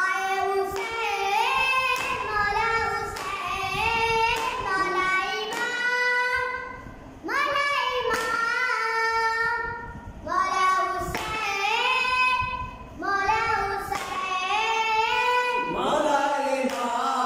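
A boy singing a noha (Muharram lament) solo and unaccompanied, in long held lines with short breaks for breath. Chest-beating (matam) strikes fall in time with it, about once a second.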